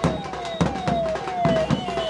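Procession drums beaten loudly in a steady rhythm, about two to three sharp beats a second, with a short falling tone repeating about twice a second.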